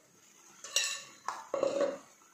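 Earthenware cooking pot being handled on the stove: a sharp clink a little under a second in, another knock, then a louder short rattling clatter near the end.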